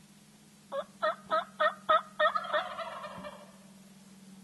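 Wild turkey gobbler gobbling once: a fast run of about seven loud rattling notes starting just under a second in, trailing off by about three seconds.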